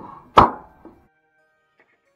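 Wooden box sides knocked against each other and set down on a wooden workbench during a dry fit: one loud, sharp wooden knock about half a second in, with a lighter knock just before it and another just after.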